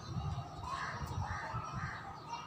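A bird calling in a series of short, harsh calls, two or three a second, over a low room rumble.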